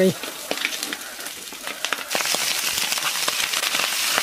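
Leftover rice frying in a hot wok: scattered crackles, then a sudden loud sizzle about two seconds in as more rice lands in the hot oil.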